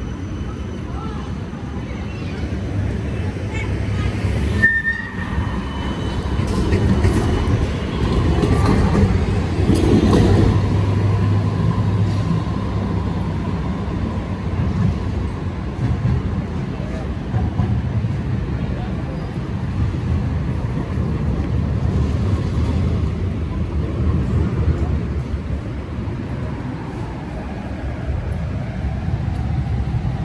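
Busy city street ambience: road traffic running past, with people's voices nearby.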